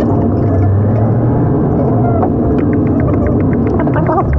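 Car driving on a road, heard from inside the cabin: a steady low rumble of engine and tyre noise with scattered light ticks.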